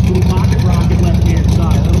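Ford 351 Windsor V8 with a Trick Flow stage 3 cam, Flowtech forward headers and Flowmaster 10 mufflers idling, a loud steady low rumble with a fast pulse to it.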